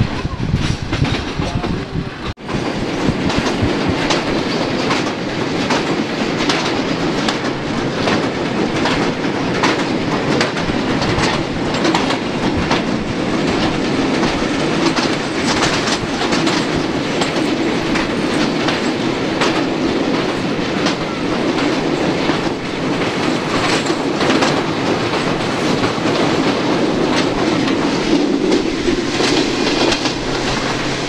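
Passenger train running at speed, heard from the open door of a coach: a steady running rumble with repeated clickety-clack of the wheels over rail joints. Part of it is heard while crossing a steel truss bridge. There is one brief drop in the sound about two seconds in.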